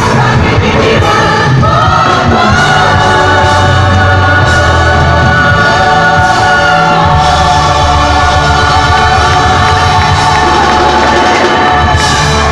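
Loud amplified live pop music with several women singing together into microphones over the band, holding long sustained notes from about two seconds in.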